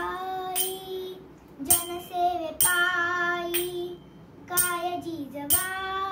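A young girl singing a Marathi abhang in long held notes. She keeps time with a pair of small brass hand cymbals (taal), struck about once a second.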